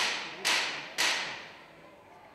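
Three sharp hand claps, about half a second apart, each leaving a short echo in a large, bare hall.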